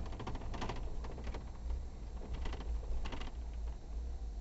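An off-road vehicle runs over a rough trail with a steady low rumble. Four short bursts of rapid clicking and rattling come through, at the start, about a second in, and twice near the end.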